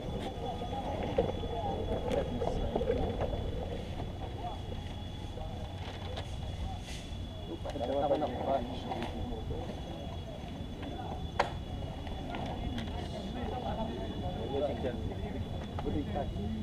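Faint, indistinct voices of people talking over a steady low rumble of wind on the camera's microphone. A sharp click comes about a second in and another past the middle.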